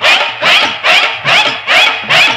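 Film-song music break: loud rhythmic shouted calls, each with an arching rise and fall in pitch, landing together with sharp percussion hits about two and a half times a second.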